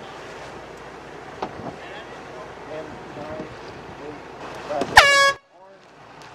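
Air horn giving one short, loud blast about five seconds in: a race committee's sound signal in a sailboat race start sequence. Wind and faint voices come before it.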